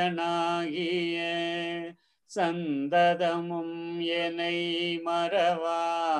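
A single voice chanting a devotional prayer in long, drawn-out held notes, with a brief pause for breath about two seconds in before the next sustained phrase.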